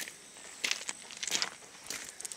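Footsteps on grass and soil: a few uneven steps, with a soft rustle between them.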